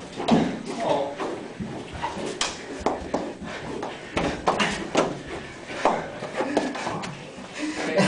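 Men's voices calling out and laughing, with scattered sharp clicks of ping pong balls hitting the walls and floor.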